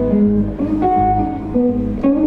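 Amplified blues guitar playing through a stage PA, picking held notes between vocal lines with no singing.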